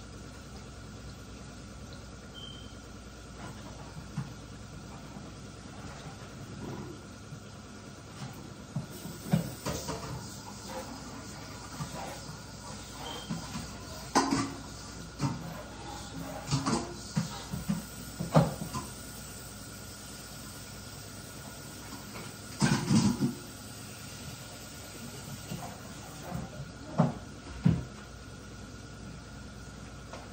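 Kitchen clatter: irregular knocks and clunks of cupboard doors and dishes, starting about a quarter of the way in and coming thickest through the middle, with a sharp double knock near the end, over a steady low hum.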